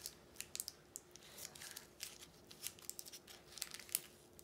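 Small red-and-silver KitKat wrapper being torn open and crinkled by hand, with faint, irregular crackles throughout.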